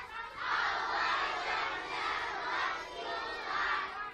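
A large crowd of children shouting together in repeated swells, many voices at once.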